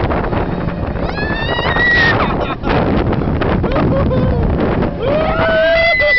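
Rushing wind buffeting the microphone as a looping ride's gondola swings through its arc. Riders scream twice over it: a short, high shriek about a second in, and a longer, held scream near the end.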